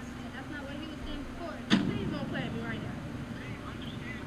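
Quiet speech from the played street-interview video over a steady low hum, with one sudden sharp sound about two seconds in, followed by louder talking.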